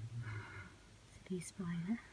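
Only a person's soft, nearly whispered speech: two short murmured phrases with a quiet pause between them.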